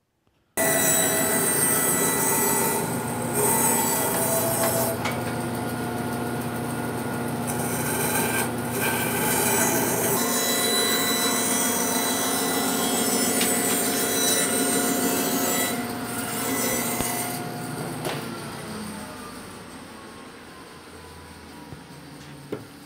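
Laguna Tools 16HD bandsaw cutting a taper along a wooden table-leg blank: a steady, loud saw noise that starts abruptly. After about 17 seconds the cutting stops and the saw winds down with a slowly falling tone.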